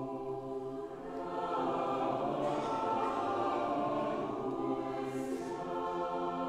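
Large mixed choir of men's and women's voices singing held chords, swelling louder from about a second in and easing off slightly near the end.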